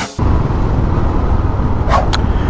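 A 2013 Royal Enfield Classic 500's single-cylinder engine running as the motorcycle rides along, mixed with steady wind rush on the camera microphone. It starts a moment in, just after music cuts off, and there is a brief click near the end.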